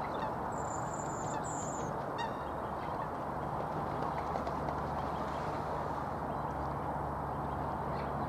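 Waterfowl calling over a steady background hiss of open-air noise. Two thin high whistles come in the first two seconds, followed by a short chirp.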